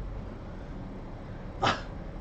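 Quiet room tone with a low steady hum, broken about one and a half seconds in by a man's short spoken 'yeah'.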